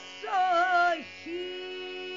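A woman singing a Hindustani tappa with no tabla: a phrase with quick wavering ornaments in the first second, then one long steady held note. A tanpura drone sounds underneath.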